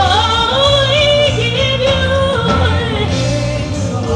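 Live gospel worship song: a woman's lead vocal, with pitch slides between notes, sung with backing singers over instrumental accompaniment with a steady low bass line.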